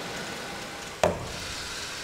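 Steady low hiss of background room tone, broken about halfway through by one sharp, short click.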